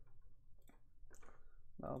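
Faint computer mouse clicks, two or three of them within about half a second, as a computer is navigated.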